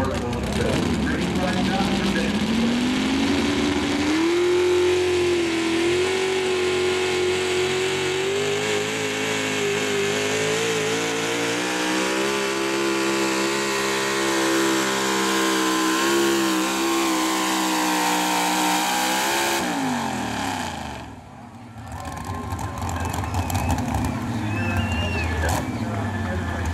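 Pulling truck's engine revving up over the first few seconds, then held at high revs under heavy load as the truck drags a weight-transfer sled down the track. Near the end the revs drop off sharply as the pull ends, followed by crowd noise.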